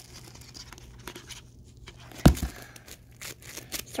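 Hands squeezing and pulling apart a bead-filled slime, giving scattered small crackles and clicks, with one loud thump a little past two seconds in.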